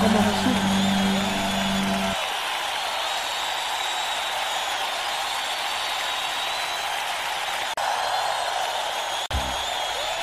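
A live worship congregation applauding and cheering as the band's final held chord rings out and stops about two seconds in; the steady applause carries on after the music ends.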